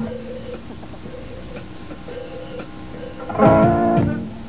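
Guitar playing live: a few sustained notes ring fairly quietly, then a louder strummed chord comes in about three and a half seconds in and starts to fade.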